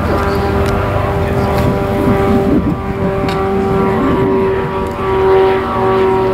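Light propeller aircraft flying overhead, its engine and propeller droning steadily.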